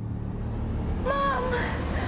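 A deep, steady rumble, with a woman's high-pitched wordless voice coming in about a second in, sliding up and then down in a drawn-out cry.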